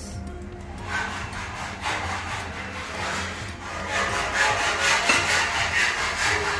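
Crisp fried onions being scraped off a plate and scattered over rice in a steel pot: a dry, repeated scraping rustle that grows louder over the last two seconds.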